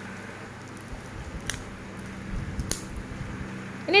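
Faint handling noises: a few soft clicks and rustles of small plastic agar-agar jelly cups being handled, about one and a half and two and a half seconds in.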